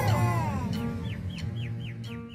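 Background music fading out, with cartoon sound effects over it: a falling pitched glide at the start, then a run of short, falling, bird-like tweets, about four a second, from about a second in. These are the dazed-character effect after the crush.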